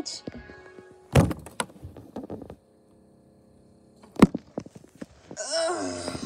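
Two heavy thunks, about a second in and again about four seconds in, with faint steady tones between them and a short high voice-like sound near the end.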